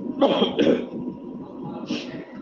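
A man clearing his throat: two short rough bursts close together, about a quarter of a second in.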